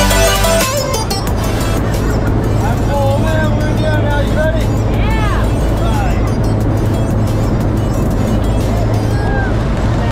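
Steady drone of a propeller-driven jump plane heard from inside its cabin during the climb, with a low engine hum under a broad rush of noise. Background music fades out about a second in.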